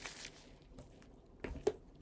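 Quiet room tone with two short, sharp clicks in quick succession about one and a half seconds in.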